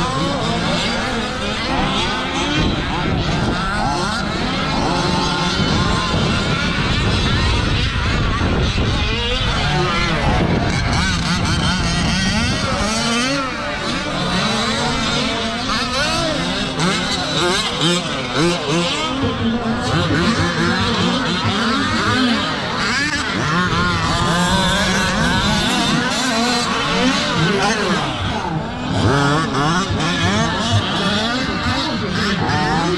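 Several large-scale RC race cars' small two-stroke engines running together on a dirt track, each repeatedly revving up and dropping off as the cars race, jump and brake.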